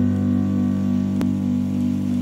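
Piano holding a low sustained chord, its tones steady with a slight pulsing. There is a single sharp click about a second in.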